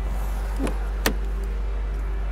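A car door's latch clicks as the door is opened: a soft click, then one sharp click about a second in, over a steady low rumble.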